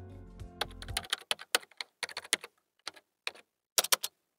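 Computer keyboard typing: a run of irregular key clicks starting about half a second in, while a background music bed fades out about a second in.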